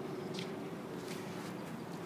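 Steady outdoor background noise with no distinct event, and a faint brief hiss about half a second in.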